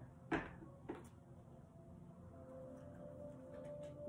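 Two light knocks about half a second apart as a card box is set down and its cards taken out.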